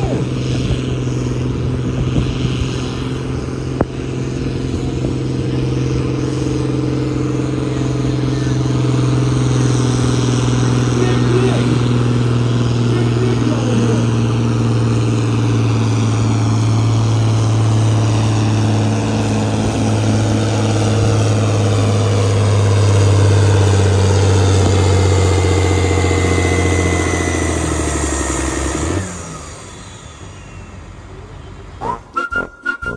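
John Deere diesel tractor engine running flat out under heavy load as it drags a weight-transfer sled down the pulling track, a steady, even drone. Near the end the pitch sags a little, and the sound cuts off sharply about a second before the end.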